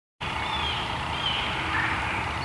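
Outdoor ambience that starts suddenly just after the beginning: a steady background hiss with a few faint bird chirps.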